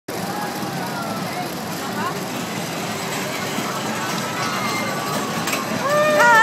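Fairground din around a running kiddie roller coaster: a steady mix of ride noise and crowd, with faint voices over it. A loud high-pitched yell starts at the very end as the coaster cars come past.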